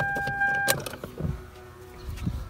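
Lexus LS 430 interior warning chime: a steady electronic tone that cuts off with a click less than a second in, as the car is shut down. A few soft thumps follow.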